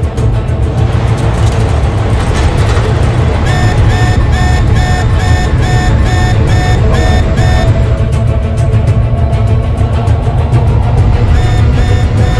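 Film soundtrack of a fighter jet in flight: a steady deep engine rumble under dramatic music. Short electronic beeps sound about twice a second from a few seconds in to past the middle, and again near the end, like a cockpit warning tone.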